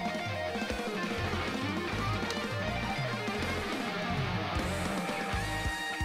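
Progressive rock song playing: electric guitar over a rhythmic bass line, with a held high note entering near the end.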